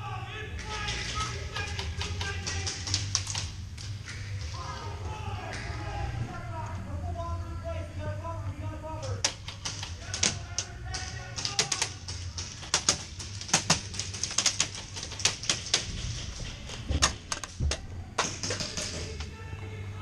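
Sharp cracks of paintball markers firing and paintballs smacking bunker walls, in irregular clusters through the second half, over music playing in the hall and a steady low hum.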